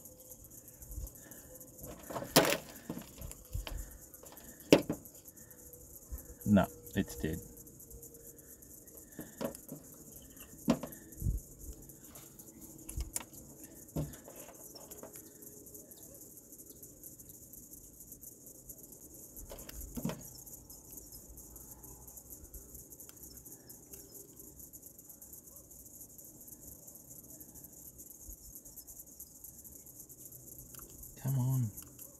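Scattered clicks and knocks of a microphone being handled and fiddled with, mostly in the first half, with one more near two-thirds of the way through. The microphone is one that died after being dropped, and it is being tried out again. A steady high hiss runs underneath.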